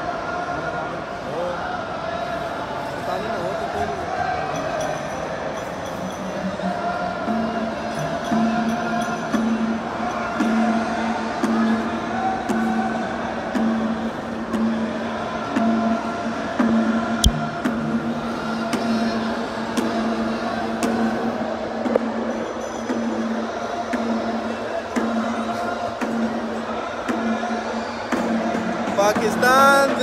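Music with singing and drum beats mixed with the chatter of a large crowd in a busy shopping-mall hall, with one sharp click about halfway through.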